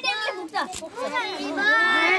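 Young children's voices overlapping, chattering and calling out together in high pitches.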